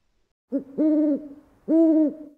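An owl hooting: a short note, then two held, even-pitched hoots about half a second each, the second sliding down at its end.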